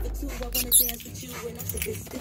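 Low, steady road and engine rumble inside a moving car's cabin, with one brief high-pitched squeak a little after half a second in.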